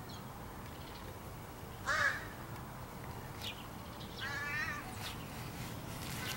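Crows calling: a short, loud nasal call about two seconds in, then a longer wavering call just after four seconds.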